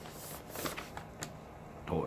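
Paper rustling briefly as a sheet is handled, with a faint click about a second in.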